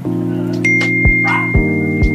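Lo-fi background music with a steady beat, and an iPhone-style 'Ding' notification tone, a single high steady note, starting just over half a second in and holding to the end.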